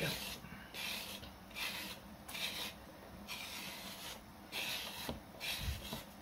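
A potter's kidney scraping clay from the rim of a hand-coiled clay bowl to thin it, in a series of short, rasping strokes, a little under one a second.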